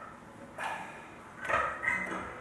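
Handling noise as a small wooden Backpacker travel guitar is picked up: a few knocks and rustles, the loudest two near the end.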